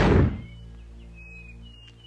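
A deep, booming film sound-effect thud right at the start that dies away within half a second, followed by a low, steady music drone with a few faint high chirps.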